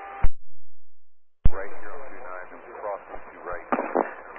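Air traffic control VHF radio as heard through a scanner feed. One transmission ends with a sharp click, and after about a second of silence another is keyed with a click. That second transmission carries band-limited hiss with faint, indistinct speech, and another click comes near the end.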